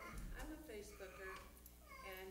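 A woman's voice speaking faintly and indistinctly, high-pitched and wavering, in two short phrases, over a steady low electrical hum.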